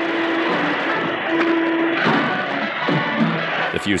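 Old film-serial orchestral score playing held notes over a loud, continuous rushing noise from an explosion.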